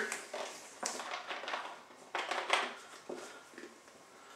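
A 2-liter plastic soda bottle being handled: its cap is worked and the bottle tipped up to pour, giving a few short scraping and plastic handling noises spread through the clip.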